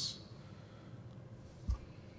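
A quiet pause on a video-call line: faint steady background hiss, with one short, low thump about three-quarters of the way through.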